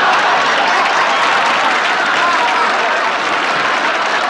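Studio audience applauding steadily, with some voices and laughter mixed in.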